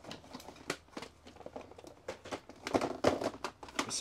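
Plastic DVD, game and VHS tape cases clicking and clattering against each other and the plastic storage tub as they are sorted by hand, busiest about three seconds in.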